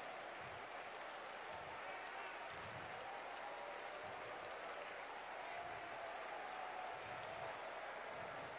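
Congregation applauding steadily and faintly, with voices calling out under it.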